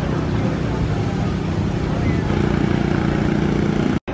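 Busy outdoor city-park ambience: a steady rush of noise with people's voices mixed in, fuller in the last second and a half.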